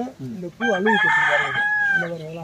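A rooster crowing: one long, raspy call held on a steady note, starting about a second in and dropping slightly at the end, heard over a man talking.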